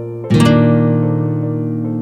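Instrumental background music: a new chord is struck about a third of a second in and held, with short, lighter notes repeating over it.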